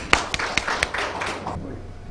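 Small audience applauding, a few sharp separate claps thickening into scattered clapping that dies away about a second and a half in.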